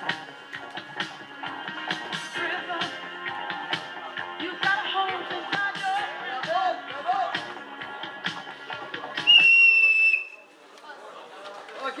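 Background music with a steady beat, then about nine seconds in a single loud whistle blast lasting about a second, after which the music drops away.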